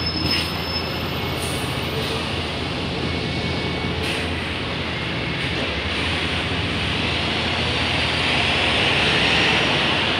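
Bus station traffic: a steady low diesel hum from idling double-decker buses. From about six seconds in, a hissing, rising whine swells and is loudest near the end.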